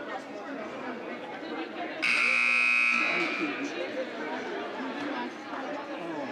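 Gymnasium scoreboard horn sounding once, a loud steady buzz for about a second starting about two seconds in, over crowd chatter; it signals the end of a timeout.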